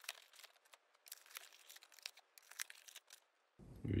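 A small cardboard box being pulled open and its packing handled: faint, irregular rustling and crackling clicks.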